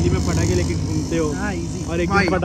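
Excited voices over the steady low rumble of a vehicle engine running nearby.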